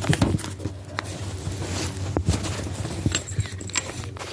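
Handling noise from a handheld camera being moved about: rubbing against the microphone and a scatter of small knocks and clicks over a steady low hum.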